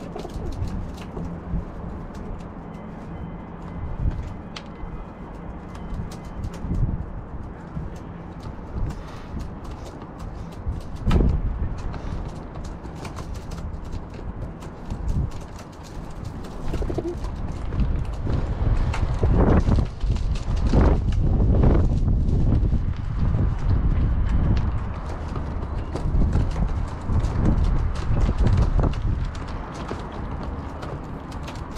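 Feral pigeons pecking seed off a plastic tray: a scatter of quick small taps, over wind buffeting the microphone, which is heavier in the second half with strong gusts.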